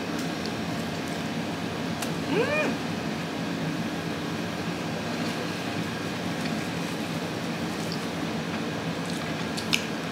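Steady room noise while someone eats, with one short, high 'mm'-like voice sound that rises and falls in pitch about two seconds in, and a couple of faint clicks.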